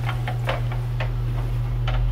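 Wall-mounted hotel hair dryer running with a steady low hum, with a string of light, irregular plastic clicks and taps as it is lifted from its holder and handled.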